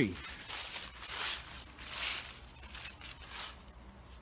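Footsteps crunching through dry fallen leaves, about one step a second.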